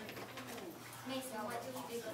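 Indistinct voices of several people talking in a room, getting a little louder about a second in.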